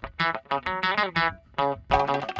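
Music: a plucked guitar playing short, separate notes, several a second.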